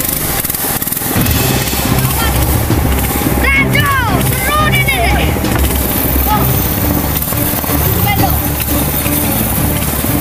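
River rapids rushing loudly around a wooden longboat as it is poled upstream, with a few shouted calls a few seconds in and again near the end.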